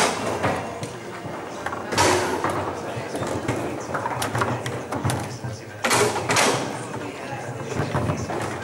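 Table-football play: sharp knocks of the ball being struck by the plastic figures and hitting the table walls, with two loud hard hits about two and six seconds in, over steady chatter in a large hall.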